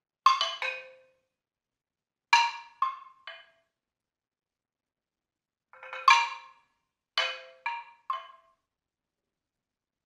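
Percussion ensemble music from a recording: bright pitched struck notes in sparse clusters of two or three, separated by silences of one to two seconds, each note ringing only briefly.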